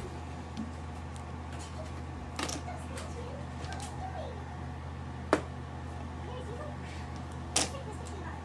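Mahjong tiles clacking as discards are laid among the tiles in the centre of the table: three sharp clacks, the loudest about five seconds in, over a steady low hum.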